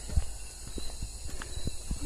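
Footsteps on a brick path: a run of soft, irregular thuds. A steady high insect drone runs behind them.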